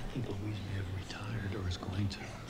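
Quiet, indistinct speech: men talking in low voices, too soft to make out the words.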